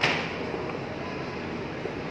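Steady background noise of an indoor shopping mall, opening with a brief loud whoosh that fades within a quarter second.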